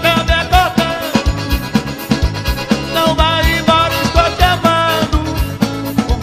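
Live forró pé de serra band playing: a piano accordion carries the melody over electric guitar and bass, with a steady beat.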